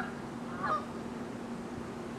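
Two short animal calls, one right at the start and a slightly longer one about 0.7 s later, over a steady low hum.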